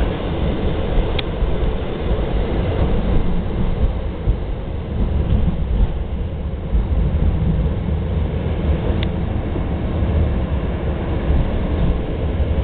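Steady low rumble of a MAX light rail train running along the rails, heard from inside the car, with two short clicks about a second in and again near the nine-second mark.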